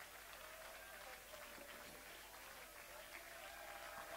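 Faint applause from a church congregation, barely above near silence.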